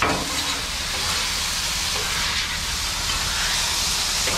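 Diced chicken thighs sizzling on a hot Blackstone steel griddle, a steady frying hiss.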